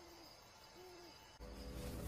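An owl hooting twice, about a second apart, against a quiet night-forest background. About one and a half seconds in, a loud, low musical swell comes in suddenly and grows.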